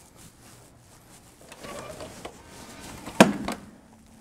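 Hotel room door being unlocked and opened: a faint mechanical whir from the key-card lock, then a sharp latch click about three seconds in, followed by a second, softer click.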